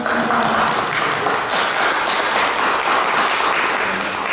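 Audience applauding: many hands clapping together in a steady, dense patter.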